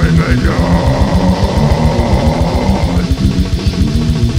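Brutal death metal demo recording: a deep growled vocal held over heavily distorted guitars and very fast drumming, the low drum hits coming in a rapid, continuous pulse.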